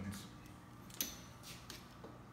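Quiet room tone with one sharp click of hard plastic being handled about a second in.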